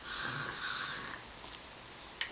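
A toddler's breath noise, a short hissy sound of about a second at the start, followed by quiet room tone.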